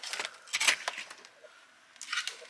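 Handling noise from a camera carried on the move: rustling with light jangling clicks, loudest about half a second in and dying down near the end.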